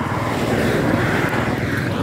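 Motorcycle engine running at a steady road speed under a constant rush of wind and road noise, while an oncoming light truck passes close by.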